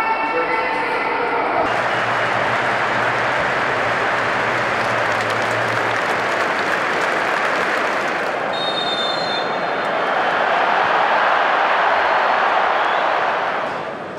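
Large stadium football crowd making a steady roar of many voices, swelling a little near the end.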